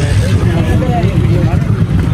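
Faint voices over a heavy, uneven low rumble.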